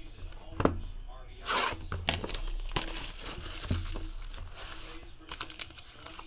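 A cardboard trading-card box being opened and the plastic-wrapped card pack inside it handled, with crinkling and tearing. There is a sharp snap about half a second in and a burst of rustling around a second and a half in.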